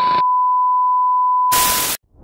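TV colour-bar test-tone sound effect: a steady, single-pitched beep, broken by a short burst of static at the start and a louder burst of static in the last half second, then cutting off suddenly.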